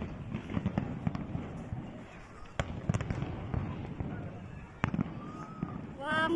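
Aerial fireworks bursting overhead: an irregular run of bangs and crackles, the sharpest bang coming near the end.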